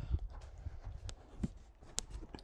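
A few irregular knocks and taps over low thumps, with the sharpest click just before the end.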